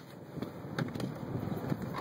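Faint rustling and a few light clicks from something being handled, over a steady low rush of wind on the microphone.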